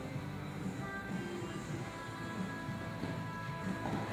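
Background music with sustained, held tones, playing at a moderate level.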